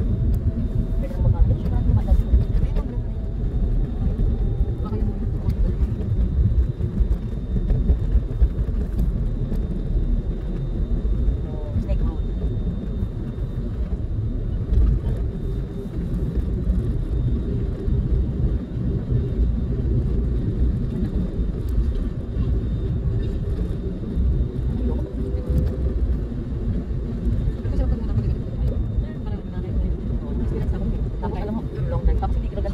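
Road and engine noise heard inside a moving car's cabin: a steady low rumble of tyres and engine as the car drives along.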